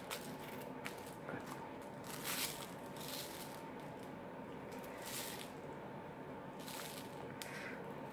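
Faint crinkling and rustling of the plastic packaging of red seed beads being opened, in a few short scratchy bursts over a low steady hum.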